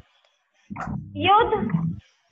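A voice says a short word in Hindi after about half a second of near silence.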